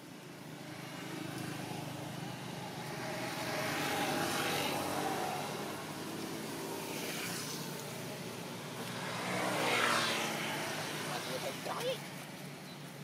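Motor vehicles passing by twice, each one swelling up and fading away; the second pass is the louder.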